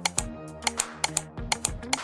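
Background music with a quick, uneven run of sharp clicks like keyboard typing: a clicking sound effect.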